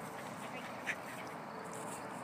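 A single short, sharp call about a second in, over a steady outdoor background hiss.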